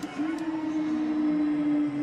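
A single steady horn-like tone, starting just after the beginning and held unchanged, over a low background hiss at the ski jump.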